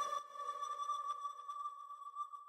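Faint tail of a Latin urban song after the beat drops out: a single sustained synth tone lingers and slowly fades, with a few faint ticks.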